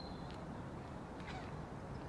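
A couple of short bird calls over a steady low outdoor background rumble.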